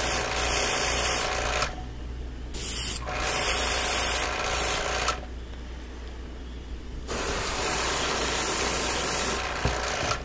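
Airbrush spraying acrylic paint onto a lure blank: a hiss of air and paint that starts and stops in several bursts of a second or two as the trigger is pressed and released, with a steady low hum underneath.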